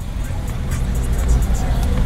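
Steady low rumble inside a car, the engine running, with faint music in the background.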